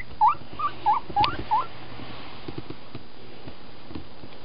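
Guinea pig squeaking: about six short rising squeaks in quick succession in the first second and a half, then it goes quiet.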